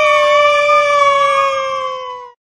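A young girl's loud, high-pitched squeal of delight: one long held note that sinks slightly in pitch and fades at the end.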